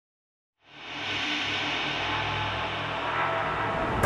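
Trailer sound design: a dense, steady drone of held tones over a noisy wash fades in about half a second in and holds.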